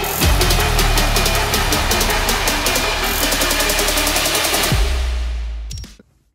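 Music with a fast, dense electronic drum beat over heavy bass, with deep downward bass sweeps near the start and near the end, fading out and cutting off at the end.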